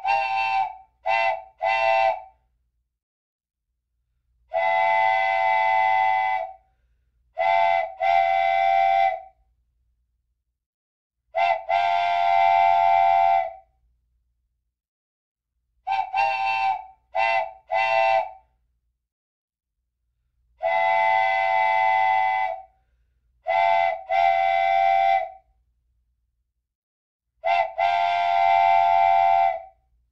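Whistle-like toots on a steady chord: three quick toots, a long blast, two short toots and another long blast, the whole pattern then repeating about every sixteen seconds with silence between the blasts.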